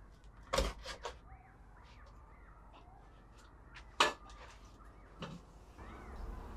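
A cardboard box set down on a shelf with a knock about half a second in, followed by a couple of lighter knocks and, about four seconds in, a sharp click, over faint room tone.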